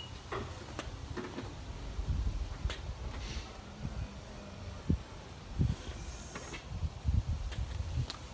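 Power tailgate of a Honda Odyssey minivan opening: its motor runs steadily as the hatch lifts, with scattered light knocks and clicks.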